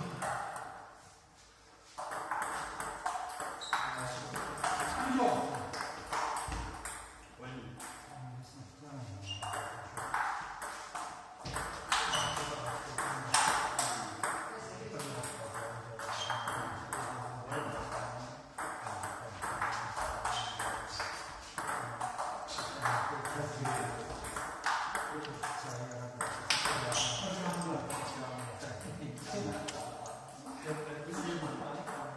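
Table tennis balls clicking back and forth off rubber paddles and the table in fast rallies, with a short lull about a second in.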